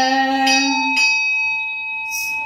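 A ritual bell rings steadily, its clear tone held throughout. Over it, a chanting voice holds a long note that ends about halfway through, leaving the bell ringing alone.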